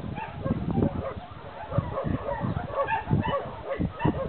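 A dog yipping and whimpering in short, irregular calls.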